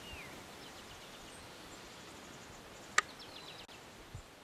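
Quiet outdoor ambience with faint bird calls: a short falling whistled note at the start and thin high chirps, over a steady background hiss. A single sharp click about three seconds in is the loudest sound.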